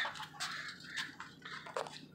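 Faint handling sounds: a few light knocks and rustles as a plastic coolant reservoir tank is lifted out and moved, over a faint low hum.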